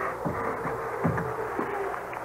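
Radio-drama sound effect of a coffin being opened: a few short knocks and creaks of the lid over a faint steady tone.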